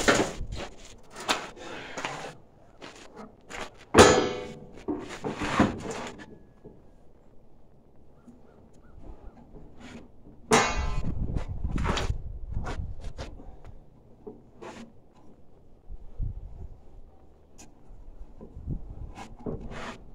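Clanks and knocks of a sheet-metal turbine housing, made from two stockpot lids, and its wooden frame being handled and set in place. Two louder metal clangs, about four and ten and a half seconds in, ring on briefly.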